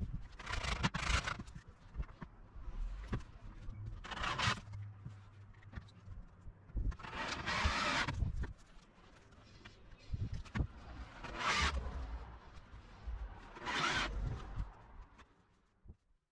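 Cordless drill driving self-drilling screws through wooden bed slats into a steel bed beam, in about five short runs a few seconds apart.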